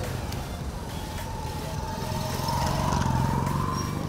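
Street traffic with small motorcycle engines running close by. The engine sound grows louder about two and a half seconds in, as if one passes near, then eases off.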